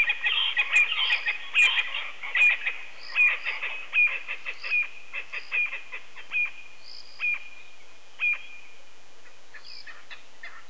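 A chorus of short, repeated animal calls, high-pitched and chirping, dense at first and thinning out, with the last clear call a little after eight seconds in.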